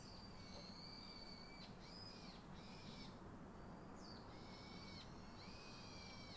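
A bird calling faintly, a run of whistled notes, each held half a second to a second and a half and repeated with short gaps.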